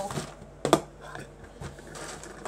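Handling noise of small plastic parts, the hollowed-out marker and its cap, being fumbled: a few short, sharp clicks and knocks, the loudest about three-quarters of a second in.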